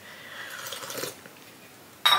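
A person sipping hot tea from a cup, a short airy slurp lasting about a second.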